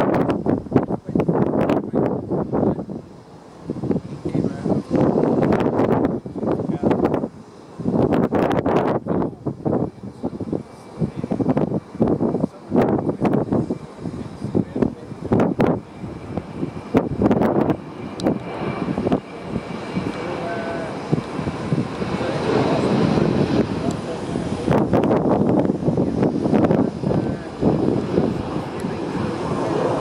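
Boeing 737-800's CFM56-7B jet engines at takeoff thrust during the takeoff roll and lift-off, a steady engine noise that builds and fills out through the second half. Loud, irregular, choppy bursts of noise sit over it, strongest in the first half.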